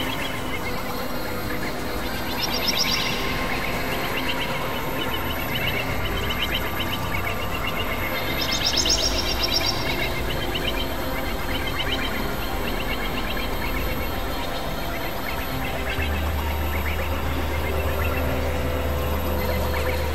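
Experimental electronic synthesizer music: sustained drones over a low bass tone, with clusters of fluttering high chirps about three seconds in and again around nine seconds. A deeper, steady bass note comes in near the end.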